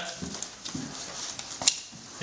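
Bundles of banded banknotes being handled and shifted in a car's front trunk: a few faint soft knocks, then one sharp click about a second and a half in.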